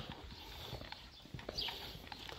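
Faint footsteps on a paving-slab path: a few light, irregular knocks and scuffs.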